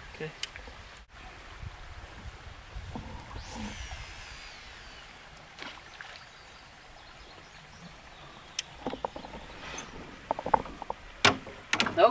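A fishing rod cast out from a boat, faint: a brief sweeping hiss a few seconds in as the line runs out, then a run of sharp clicks and knocks from reel and tackle handling near the end.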